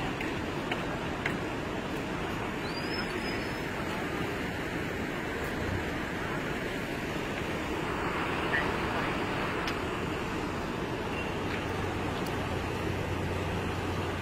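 Steady rushing of muddy floodwater in a swollen river, a continuous even roar; a low hum joins in near the end.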